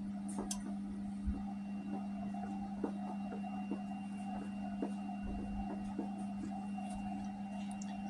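Steady low hum with a few faint, scattered ticks.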